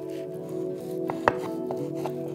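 Knife cutting through crisp baked filo pastry, with a few short crackles and one sharp click a little over a second in. Background music plays under it.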